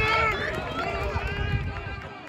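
Several spectators shouting and cheering at once, their voices overlapping, the noise dying down toward the end.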